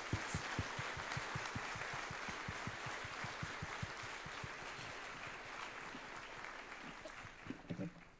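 Audience applauding, the clapping slowly thinning, then cut off abruptly near the end.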